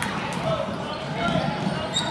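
A basketball being dribbled on a hardwood gym floor during play, with spectators talking and calling out.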